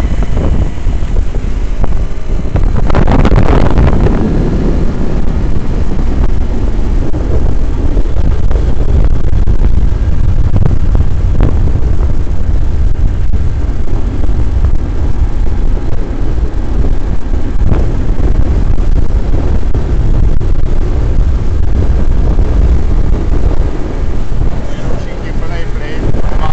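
Heavy wind buffeting a camera microphone on a moving motor scooter, over the scooter's engine running along the road, with a brief louder rush about three seconds in.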